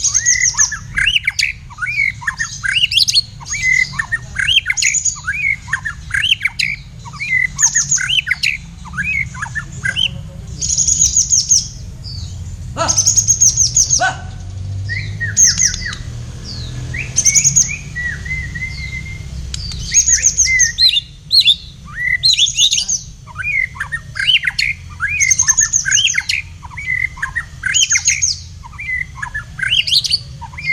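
A white-rumped shama (murai batu) and a kapas tembak bulbul singing against each other in a song duel: a fast, dense stream of whistles and chirps, with bursts of high trills returning every second or two. A brief rustle comes about a dozen seconds in.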